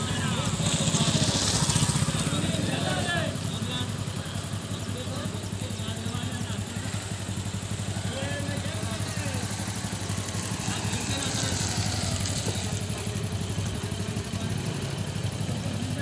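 A motor running steadily with a low rumble, loudest about one to two seconds in, under faint background voices.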